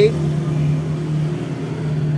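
A steady low mechanical hum, holding one pitch throughout.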